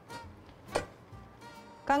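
Chef's knife slicing through a button mushroom onto a wooden cutting board: one sharp knock about three-quarters of a second in, with a lighter one near the start. Faint background music runs underneath.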